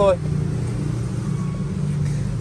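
A steady, low engine hum, like a motor vehicle running at idle, with no change in pitch.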